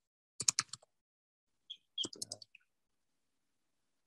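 Computer keyboard typing: two short bursts of quick keystrokes, one about half a second in and another around two seconds in, as two short words are typed.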